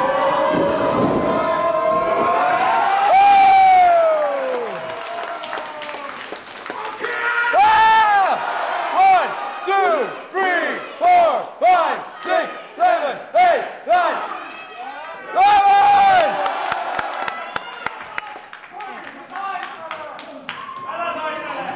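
A small wrestling crowd shouting and cheering, with a run of short rhythmic shouts, about two a second, in the middle.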